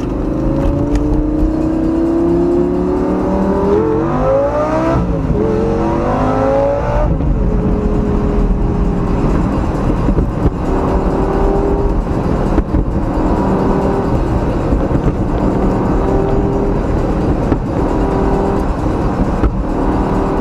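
Lamborghini Gallardo V10 accelerating hard, heard from inside the cabin. Its pitch climbs over the first few seconds, rises and drops quickly several times about four to seven seconds in as it shifts through the gears, then settles to a steadier cruising note.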